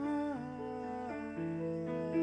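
A man's singing voice holding and bending long notes over sustained piano chords.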